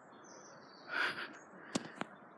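Faint bird calls: a thin high whistle, then a soft call about halfway through. A single sharp click comes near the end.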